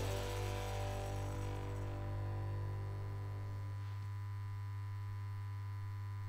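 Steady low electrical hum and buzz of a neon sign lighting up. Ringing tones fade away over the first few seconds above it.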